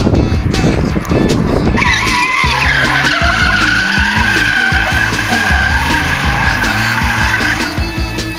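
A car drifting: its engine runs hard. About two seconds in, the tyres start one long squeal, sagging slightly in pitch, which stops shortly before the end.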